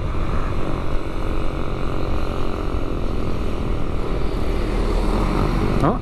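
Sport motorcycle cruising steadily at moderate speed, its engine running with a constant drone under a steady rush of wind on the microphone.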